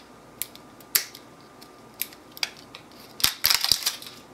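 Sharp clicks and rattles of a small plastic spool of solder being handled and picked at to get it open. Single clicks come about a second apart, then a quick run of louder clicks near the end.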